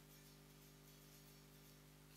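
Near silence: a faint steady low hum with hiss.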